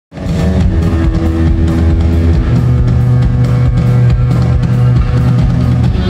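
Live rock band playing loudly: guitar and bass notes held under a steady drum beat.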